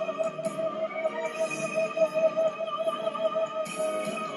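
Recorded live ballad performance playing back: a male singer holds one long, high wordless note with a steady vibrato over piano accompaniment.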